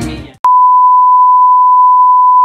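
A loud, steady electronic beep: one pure tone at a single fixed pitch, starting abruptly about half a second in and held unbroken, just after hip-hop music with rapping dies away.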